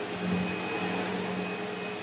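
Sebo X7 upright vacuum cleaner running on a rug: a steady motor hum, with a lower hum that grows stronger just after the start.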